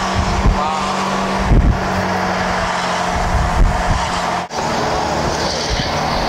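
Engine and road noise of a moving car: a steady low drone with a constant hum. About four and a half seconds in, the sound drops out for a moment and the hum stops.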